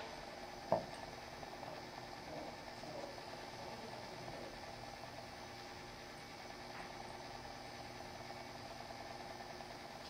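Faint steady room hum, with one short click less than a second in, as a small pin is set by hand into the nut and hub of a feathering propeller.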